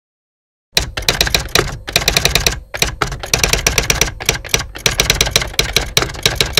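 Typewriter sound effect: rapid key strikes in runs with brief pauses between them, starting just under a second in.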